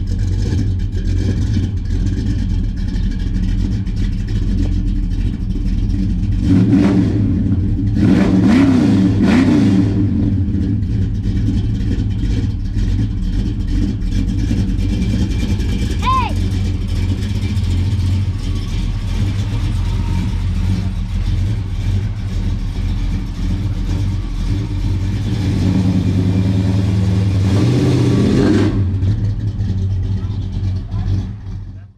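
The 1964 Chevelle's 355 small-block Chevy V8, breathing through Hedman headers, running with a deep steady exhaust rumble. It is revved briefly a couple of times about a third of the way in, and it rises again near the end as the car pulls away.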